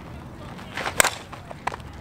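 A two-piece composite Miken Freak 23KP slowpitch softball bat striking a 52/300 softball about a second in: a single sharp crack.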